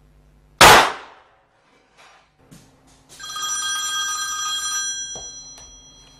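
A single pistol shot about half a second in, sharp and loud with a short echoing tail, followed by a moment of silence. About three seconds in, a ringing made of several steady high tones comes in and fades away over about two and a half seconds.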